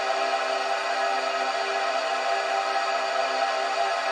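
Ambient synth atmosphere sample playing: a sustained pad of several held tones, steady throughout.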